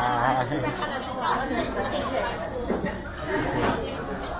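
Indistinct chatter of several voices in a busy restaurant dining room, no words clear.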